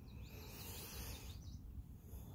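Faint outdoor ambience: a low steady rumble with faint bird calls. A soft rustle comes about half a second in and fades by a second and a half.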